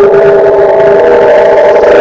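Ident music: a loud held chord of several steady tones with a rough, noisy edge, sustained without change.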